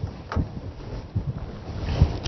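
A person moving about, heard as a few soft thumps over a low rumble.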